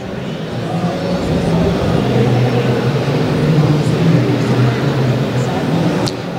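Indistinct murmur of voices and hall noise in a large, busy venue. It grows louder over the first second or two and then holds steady.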